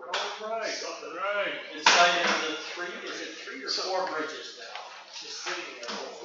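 Indistinct speech throughout, with one sharp knock about two seconds in.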